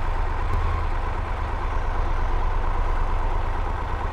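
Triumph Tiger 1200 GT Explorer's three-cylinder engine idling steadily in slow traffic, a constant low hum.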